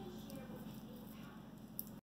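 Quiet room tone, with a faint click near the end.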